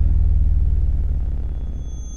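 Deep bass boom from an intro sound effect, its low rumble slowly fading away.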